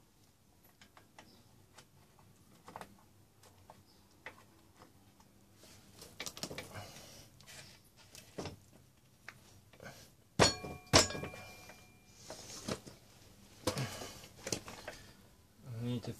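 Scattered light metal clicks and handling noises as a motorcycle's rear chain adjusters are loosened on the swingarm, with one loud ringing metallic clink, struck twice in quick succession, about ten and a half seconds in.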